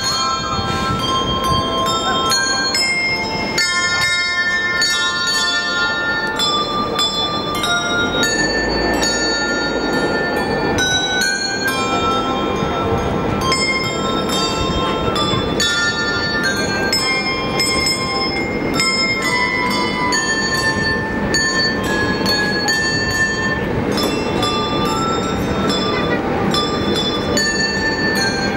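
A handbell ensemble playing a piece: many tuned handbells rung in quick succession and in chords, each tone ringing on over the next.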